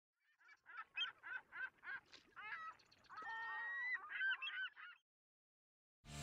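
Birds calling: a quick run of about six short repeated calls, then a few longer calls with several notes, stopping about five seconds in.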